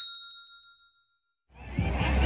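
A bright bell 'ding' sound effect for the notification-bell button rings out and fades away over about a second and a half. Near the end, loud outdoor music with a heavy bass fades in.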